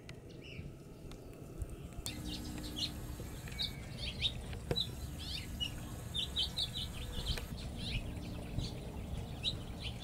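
Small birds chirping and tweeting outdoors: many short, high notes scattered irregularly, starting about two seconds in, with a single sharp click near the middle.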